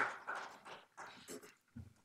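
Applause fades out in the first half second. After that come faint, scattered voices, talking away from the microphones.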